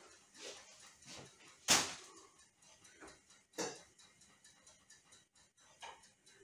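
Kitchen handling sounds: a metal baking tray and bread being moved about on a wire cooling rack, a few soft knocks with two sharper clunks, one just under two seconds in and one near four seconds.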